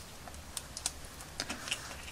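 Light, irregular clicks and ticks, about half a dozen in quick bunches, from metal tweezers handling a small paper sticker and its backing sheet.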